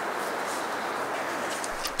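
Steady, even background hiss of outdoor orchard ambience, with no distinct event standing out.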